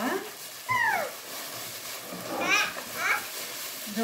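A toddler's high-pitched vocal sounds: one falling squeal about a second in, then a few short squeaky calls around two and a half and three seconds, with the faint crinkle of a plastic bag being handled underneath.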